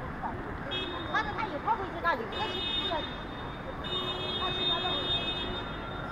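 A high-pitched vehicle horn sounding three times, a short toot and then two longer blasts of about a second each, over street traffic noise.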